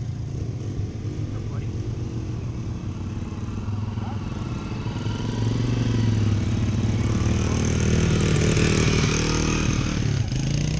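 Dirt bike engine running at low revs, growing louder about halfway through as the bike rides slowly past close by, loudest near the end.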